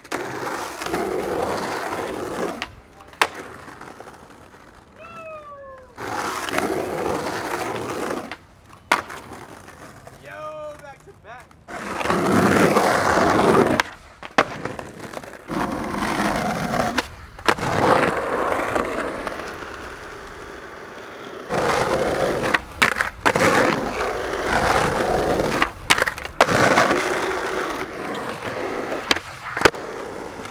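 Skateboard wheels rolling over concrete and asphalt in several separate runs, broken by sharp clacks of the board popping and landing.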